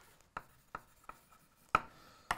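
Chalk writing on a blackboard: about five short, separate chalk strokes, each a brief tap, with near quiet between them.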